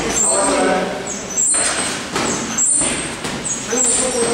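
Indistinct human voices with no clear words, running on at a steady level with short dips about every second.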